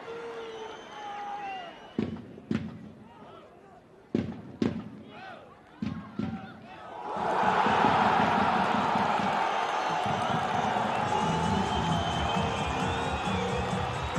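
Stadium crowd roaring as the home side scores. The roar swells suddenly about seven seconds in and stays loud. Before it, a few sharp thuds of the ball being kicked and players' shouts sound over a quiet crowd, and a low music line comes in under the roar near the end.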